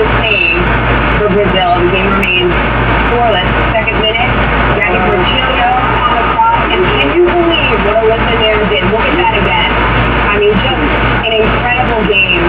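Soccer-match TV broadcast audio: indistinct voices with wavering pitch over a steady low hum.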